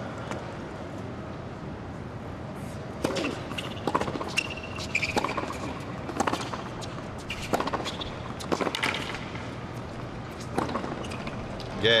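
Tennis rally on a hard court: rackets strike the ball back and forth, one crisp hit about every second, starting about three seconds in and ending near the end. A brief shoe squeak comes midway, over a low crowd murmur.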